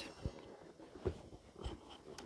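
Quiet background with three faint soft knocks about a quarter, one and one and two-thirds seconds in.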